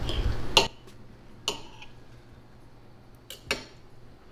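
Knife and fork scraping on a plate as food is cut, ending in a sharp clink about half a second in. Then a few light clinks of cutlery on the plate, the last two close together near the end.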